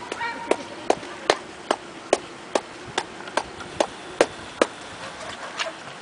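A regular series of sharp clicks, about two and a half a second, stopping a little past halfway.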